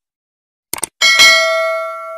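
A quick double mouse-click sound effect, then about a second in a bright bell ding that rings out and fades. This is the notification-bell chime of a subscribe-button animation.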